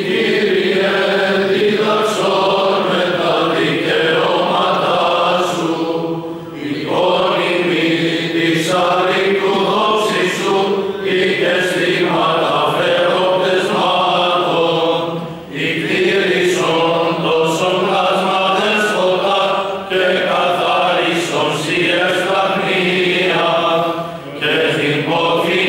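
Greek Orthodox clergy singing Byzantine funeral hymns together: sustained, melodic chant in long phrases with brief pauses between them.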